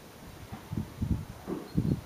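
A pony's hooves thudding on a sand arena floor at a trot: a run of dull, low thuds about three a second, the loudest near the end.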